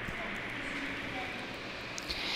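Steady background noise: a faint, even hiss with no distinct events.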